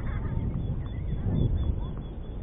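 Bird calls over a low, steady rumble.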